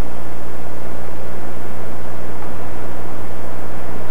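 Steady low electrical hum with a layer of hiss and no other sound: background noise of an old analogue video recording.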